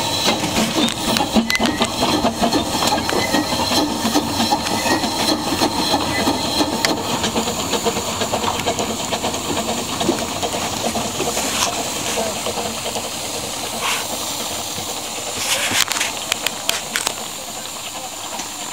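Steam hissing steadily from a narrow-gauge steam locomotive, heard from its footplate. A few sharp knocks come in the second half.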